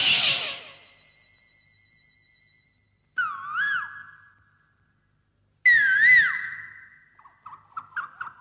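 Film-soundtrack interlude of eerie effects: a loud noisy crash with a held high tone at the start, then two wavering, whistle-like calls of about a second each, a few seconds apart, and short chirping notes near the end.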